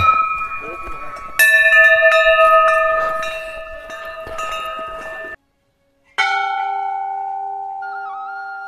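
Cluster of brass temple bells rung by hand, several clanging together and ringing on while slowly fading. After a sudden break of about a second, a single bell is struck and rings on with a steady, sustained tone.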